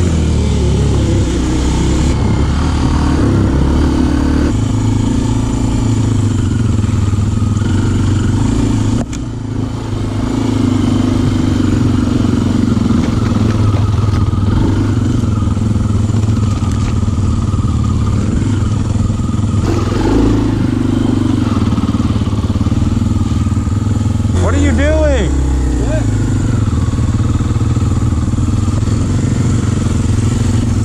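Kawasaki KLX dirt bike's single-cylinder four-stroke engine running on a trail ride, its note rising and falling with the throttle. The engine drops off briefly about nine seconds in, then picks back up.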